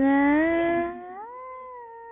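A solo female voice singing unaccompanied, holding one long note that slides up in pitch about a second in and is then held.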